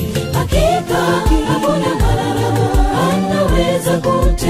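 Music: a choir singing a Swahili gospel song over a steady beat.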